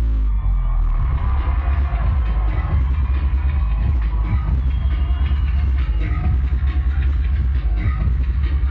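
Live electronic synth-pop played loud through a concert PA and heard from within the crowd, with a heavy, booming bass and synth or vocal lines above it.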